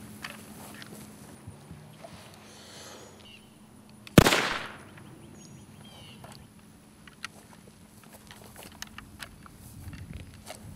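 A single rifle gunshot about four seconds in: one sharp crack with a short decaying tail. Faint small clicks and quiet outdoor background sound surround it.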